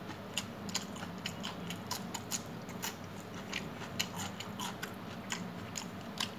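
Eating rice and chicken curry by hand from a steel plate: fingers mixing rice on the plate and chewing, a run of small irregular clicks and smacks, several a second.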